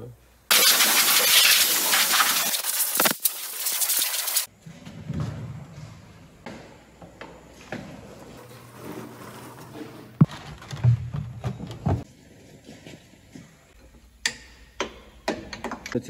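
A loud, rushing hiss that starts about half a second in, lasts about four seconds and cuts off abruptly, followed by quieter scattered clicks and knocks of workshop work.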